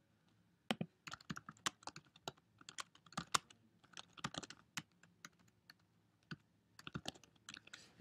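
Faint typing on a computer keyboard: an irregular run of keystrokes starting about a second in and stopping just before the end, as a short phrase is typed.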